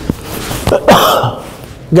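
A man's mouth click followed by a loud, sharp breath close to a clip-on microphone, about a second in.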